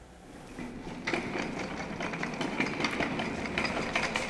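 Wheeled monitor stand being rolled across a concrete floor. Its casters make a steady rattle full of small clicks, starting about half a second in.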